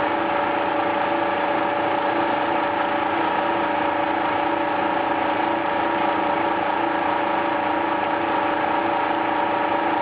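Flexor 380C servo-driven label die-cutting and rewinding machine running at production speed, about 200 m/min: a steady mechanical whir with several held tones and a faint, even pulsing underneath.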